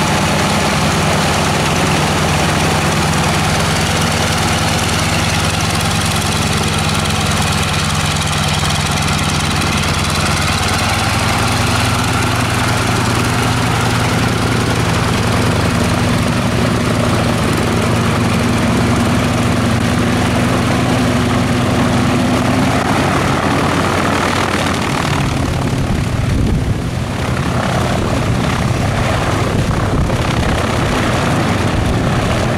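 Fairey Swordfish's Bristol Pegasus nine-cylinder radial engine running at low power while the biplane taxis on grass, a steady propeller-driven drone. Its note rises slightly about a third of the way in and dips briefly near the end.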